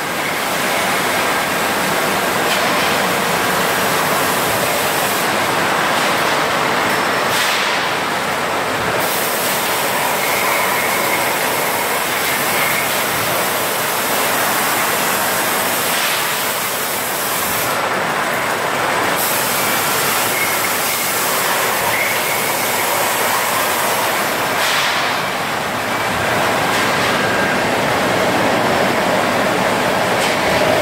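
Ersey 5-litre water-bottle filling and capping line running: a loud, steady mechanical din of the conveyors and the rotary filler-capper working.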